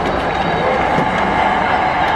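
Arena sound system playing the intro video's soundtrack: a sustained synthesized drone with a few sliding tones, echoing in a large hall.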